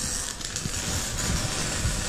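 A steady rushing noise with an irregular low rumble underneath: wind and handling noise on a handheld camera's microphone as it is swung over the trailer's side.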